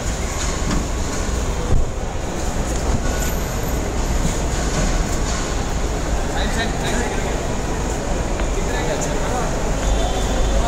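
Steady low rumble of vehicle engines and traffic under a concrete car-park roof, with a constant high hiss and indistinct voices.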